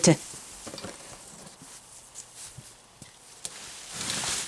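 Quiet outdoor sound of someone working in a garden: faint scattered rustles and a few light knocks as a person moves about between compost bins and a wheelbarrow.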